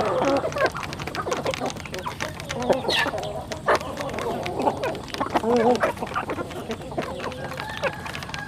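A flock of chickens clucking in short, overlapping calls while they feed, with many sharp taps of beaks pecking grain from a feeding trough.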